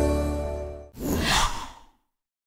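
Logo ident audio: a held synth music chord with a deep bass fades out about halfway through, then a short whoosh sound effect sweeps downward and stops abruptly.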